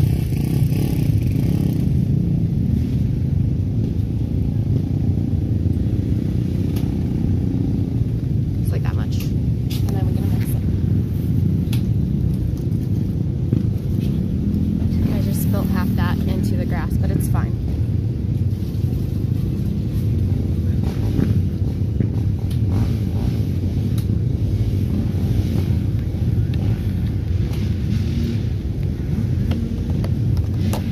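A steady low rumble with muffled talking over it and a few short clicks.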